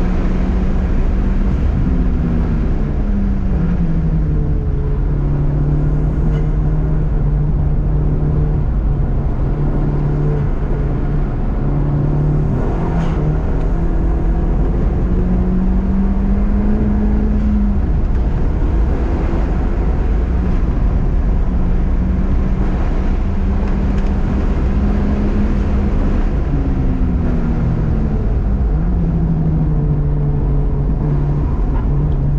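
Turbocharged four-cylinder engine of a 2020 Honda Civic Si fitted with a 27Won W2 turbo, heard from inside the cabin while driven on a race track: the engine note climbs and drops several times as the car speeds up and slows, over a steady low road and tyre rumble.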